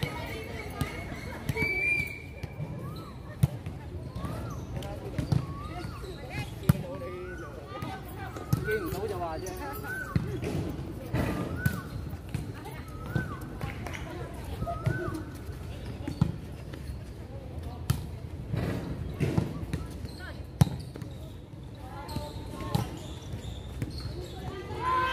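Volleyball being struck and bouncing on a hard outdoor court: a string of sharp slaps and knocks, irregularly a second or two apart, with players' voices calling out between them.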